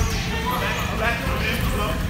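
Several people talking at once in a large gym, over the rolling and knocking of sports wheelchairs on a hardwood basketball court.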